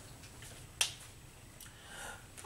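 A single sharp click about a second in, against faint room noise during a pause in the speech.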